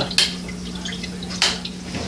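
Two sharp clinks a little over a second apart as small Meccano parts and a screwdriver knock together while a screw is driven into a held nut, over a steady low hum.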